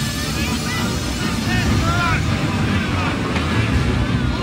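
Film soundtrack of a crowded dockside scene: many voices calling and shouting over a dense background rumble and music.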